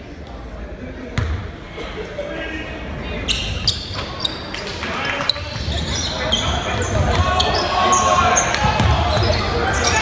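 Basketball game in a gym: the ball bouncing on the court amid short sharp sounds and the voices of players and spectators, getting louder over the second half.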